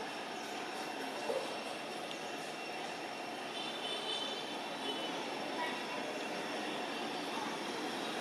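Steady outdoor background noise: an even, continuous hiss with faint high steady tones and no distinct events.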